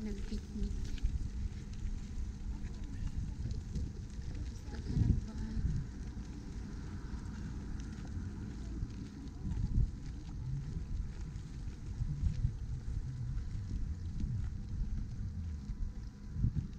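Wind buffeting the microphone: an uneven low rumble in gusts, strongest about five seconds in and again near ten seconds.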